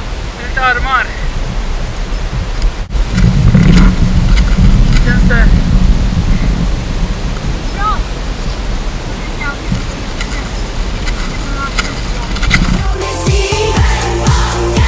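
Wind rushing over the microphone, with short sung phrases from a background song faintly over it. About a second before the end, a louder electronic music track with a steady beat comes in.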